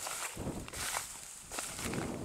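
Footsteps of a person walking through a wheat field, with dry wheat stalks brushing and rustling against him at each stride.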